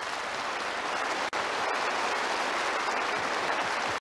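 Audience applauding at the end of a live song: a dense, steady clapping, briefly cut out for an instant about a second in.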